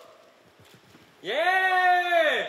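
A short near-quiet lull with a few faint taps, then, a little over a second in, a loud drawn-out vocal exclamation like an excited 'wooo', its pitch rising, holding and falling.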